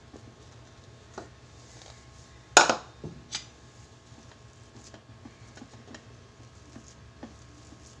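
Kitchen utensils knocking against dishes: one sharp clatter about two and a half seconds in, followed by two smaller knocks and a few light taps.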